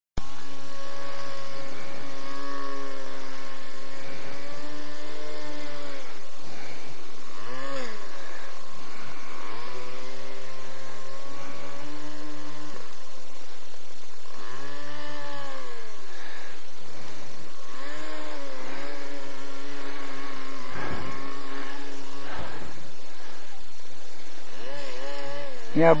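Radio-controlled airboat's motor and propeller running, its pitch rising and falling again and again as the throttle is opened and eased off.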